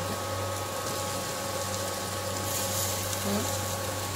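A steady low mechanical hum with a faint even hiss of ivy gourd (tindora) frying in a pan.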